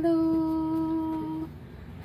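A person's voice drawing out a long "hellooo" on one steady note for about a second and a half, then stopping.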